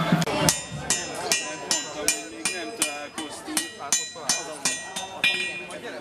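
Blacksmith's hammer striking a workpiece on an anvil in a steady rhythm, about two to three blows a second, each with a bright metallic ring. The hammering starts about half a second in, as music cuts off.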